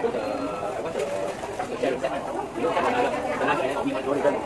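Indistinct background chatter of several voices.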